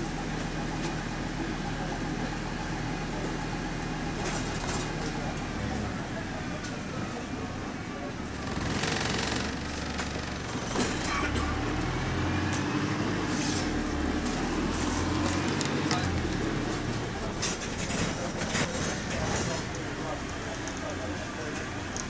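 Interior of a bus on the move: its engine and drivetrain running as a steady low drone, with the engine note shifting around the middle, plus rattles and passengers' voices.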